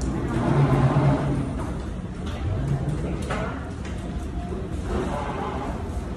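Steady low rumble inside an elevator car, with brief muffled voices, the loudest about a second in and again around the middle.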